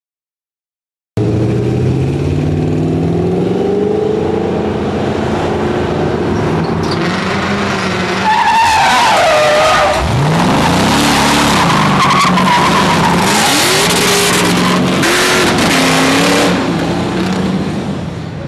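A car engine revving and accelerating, its pitch rising, starting about a second in. From about eight seconds in, tires squeal and skid with a wavering whine while the engine pitch swings up and down, then the squeal dies away near the end.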